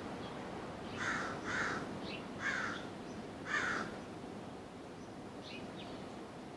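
A bird giving four short, harsh calls over about three seconds, with a few faint high chirps around them.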